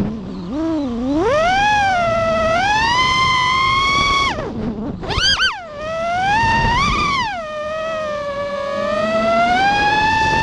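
FPV quadcopter's brushless motors whining, the pitch rising and falling with the throttle. The pitch dips sharply about a second in, cuts out briefly around four and a half seconds, and jumps up again in a quick burst before settling into a steadier whine.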